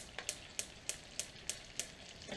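A spoon stirring a thick mix of crushed digestive biscuits, Maltesers, melted butter and golden syrup in a pan, with short, sharp strokes against the pan about three times a second.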